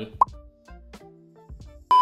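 A short rising pop about a fifth of a second in, then faint background music of held notes, then a louder, very short pop with a ringing tone at the very end.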